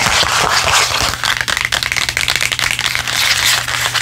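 Long press-on fingernails tapping and scratching rapidly on a cardboard perfume sample card held close to the microphone, in a dense run of small crisp clicks and scrapes.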